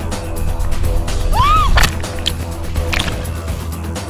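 Background music with a steady, heavy bass. About a second and a half in, a short pitched sound rises and falls, followed by a few sharp clacks.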